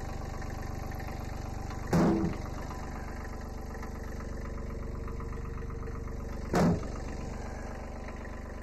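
1981 Kubota B7100 HST diesel compact tractor, a small three-cylinder diesel, idling steadily. Two loud knocks cut across it, about two seconds in and again near the end, from firewood being dropped into the tractor's loader bucket.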